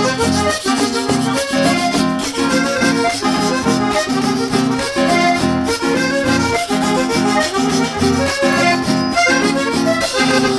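Live band playing an instrumental passage led by a button accordion, over acoustic guitar and hand drums keeping a steady beat.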